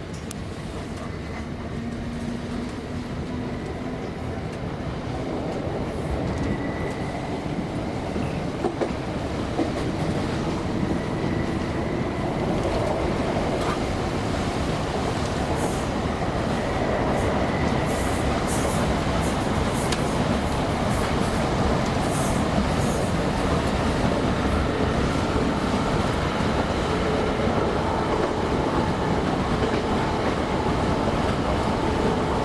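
Onboard running noise of a Class 317 electric multiple unit: a steady rumble of wheels on the rails with a few sharp ticks. It grows louder over roughly the first twenty seconds, then holds steady.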